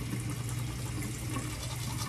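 Teeth being brushed with a manual toothbrush, over a steady hiss and a low hum.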